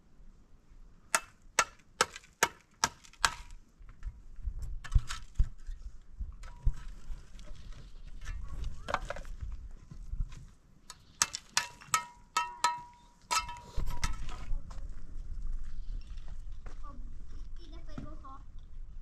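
A steel masonry tool striking a hollow concrete block: sharp knocks in quick runs of a few blows a second, some leaving a brief metallic ring, as the block is chipped and trimmed to size.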